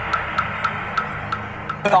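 Table tennis ball clicking back and forth between paddles and table in a fast rally, sharp knocks about four a second. The knocking sounds like a moktak, a wooden temple block.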